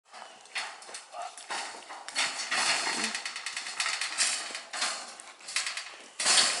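A doe caught in a steel hog trap struggling, her hooves scrabbling and knocking with rustling in the litter, loudest and busiest from about two to five seconds in.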